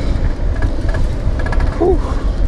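Wind rumbling on the microphone and road noise from an e-bike riding along at speed, steady and heavy in the low end.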